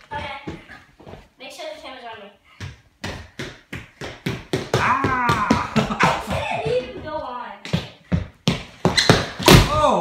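Knocks and clatters of Heelys roller shoes on a hard floor as a child skates and stumbles, with voices calling out without words. The loudest sound is a hard thud about nine and a half seconds in: a bad fall, in which the onlooker thinks the child's head hit the floor.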